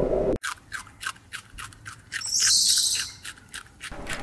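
A low rumble cuts off abruptly just under half a second in. After it, a red squirrel eats seeds with rapid crisp crunching clicks of shells being cracked, several a second, and a brief high hiss partway through.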